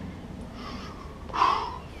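A man's hard breathy exhale about a second and a half in, after a fainter breath before it: heavy breathing from the effort of jump squats.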